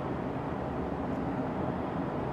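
Steady background noise with a faint low hum, with no distinct events.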